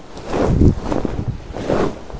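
A large fabric bed cover being flapped up and spread over a bed, whooshing through the air twice, with the rush of air buffeting the microphone.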